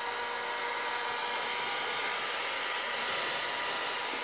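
Electric heat gun running steadily on its set heat, a constant blowing hiss with a faint whine, warming up to melt a golf club's ferrule and soften the hosel glue.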